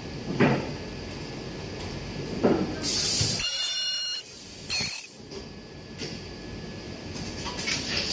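Rotary-table high-frequency plastic welding machine working through a cycle. Two thumps come in the first few seconds, then about a second and a half of loud hissing with a high buzz around three to four seconds in, and another short hiss about five seconds in.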